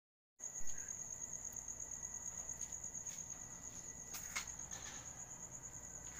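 Crickets chirping: a steady, high, rapidly pulsing trill that starts just after a moment of silence, with a couple of faint clicks about four seconds in.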